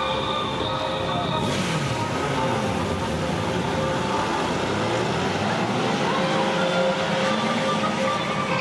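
Several Honda police motorcycles pulling away and passing at speed, their engine pitch rising and falling as each goes by; the engines open up about a second and a half in. Steady background music runs underneath.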